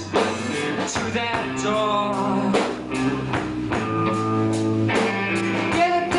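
Live rock band playing: electric guitars and a drum kit with a sung lead vocal, steady drum strikes under held guitar and vocal notes.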